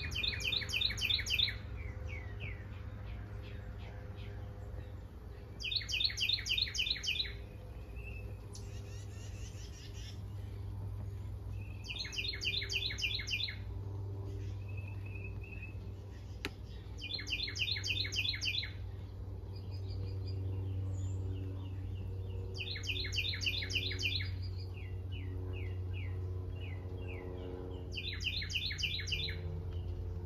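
A songbird singing a short, rapid trill of evenly spaced high notes, repeated about every six seconds, over a low steady rumble.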